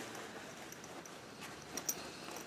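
Quiet rustling of a fabric project bag being handled, with a brief tap near the end.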